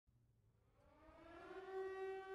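Air-raid (civil defense) siren winding up: a single tone fades in, rising in pitch for about a second, then holds steady and grows louder.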